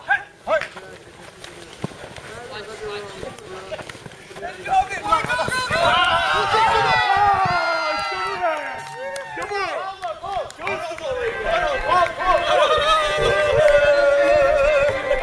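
Men shouting and cheering excitedly during a touch-rugby play, with running footsteps on the pitch. Near the end, music with long held notes starts up.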